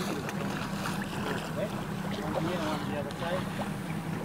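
Motorboat underway at sea: the engine's steady hum under the rush of wind and water.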